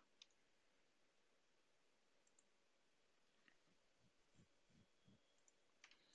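Near silence, with a few faint scattered clicks and soft low knocks.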